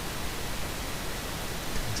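Steady hiss of background noise on the recording, with no other distinct sound.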